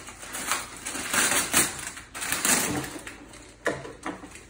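A brown paper mailing bag being torn open by hand and its paper crumpled: a run of uneven tearing and crackling rustles.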